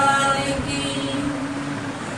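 Men and women singing a Santali song together without instruments, holding the end of a long note that fades after about half a second; a softer held tone lingers through the rest of the pause.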